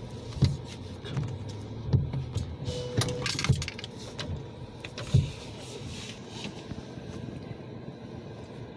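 Windshield wipers sweeping back and forth across the glass, heard from inside the car's cabin, with irregular low thumps and light clicks.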